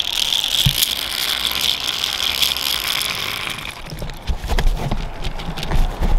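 Zip line trolley pulley rolling along the steel cable, a steady high whir that dies away after about three and a half seconds as the rider stalls partway along the line. Scattered clicks and knocks follow.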